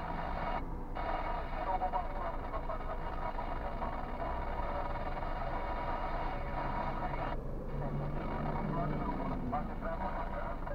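Car radio speech playing inside a car cabin, a voice talking almost without pause, over a steady low rumble from the idling car and traffic.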